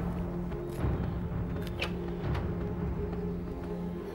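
Tense dramatic film score: sustained low held notes with a few low thuds.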